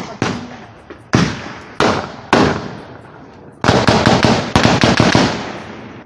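Gunfire: a few separate shots, each ringing out with a long echo, then a rapid volley of shots lasting about two seconds.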